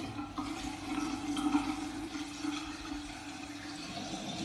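Tap water running and splashing into a bathroom sink, with a steady low hum in the flow.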